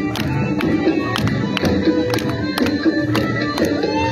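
Traditional Balti sword-dance music: a drum beating steadily at roughly three beats a second under a held melody line.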